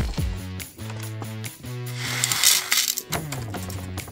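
Background music with held notes, over which small gold nuggets and flakes are tipped off a folded sheet of paper into a plastic weighing boat on a pocket scale, a brief light rattle and slide about two to three seconds in.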